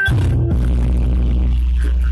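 Loud dance music over a PA sound system, with a deep bass note that comes in about half a second in and holds steady.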